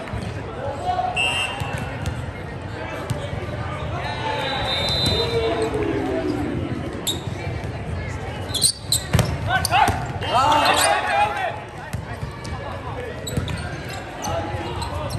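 Indoor volleyball rally in a large, echoing gym: sharp smacks of the ball being played, clustered a little past the middle, over a constant hubbub of voices. Players shout loudly just after the hits.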